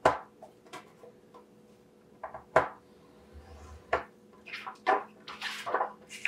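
Paper strips and a stylus handled on a plastic scoring board: a few sharp taps and clicks, a faint scrape around the middle, and a short papery rustle as a strip is slid across the board near the end.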